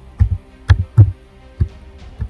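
Background music with a deep, thudding bass beat over faint held notes.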